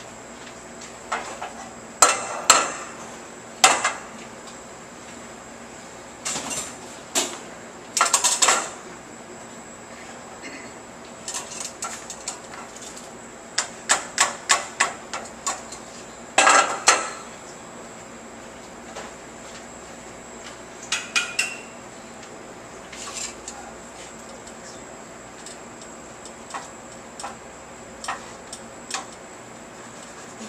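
Stainless steel saucepans and a metal ladle clanking and knocking against each other in irregular clusters of sharp clinks, with a quick run of taps a little past the middle. The ladle is working tomato sauce through a conical strainer (chinois) over a pot.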